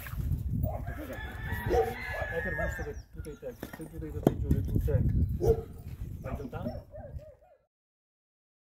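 A drawn-out bird call lasting about two seconds, starting about a second in, heard over low voices and occasional knocks; the sound cuts off abruptly shortly before the end.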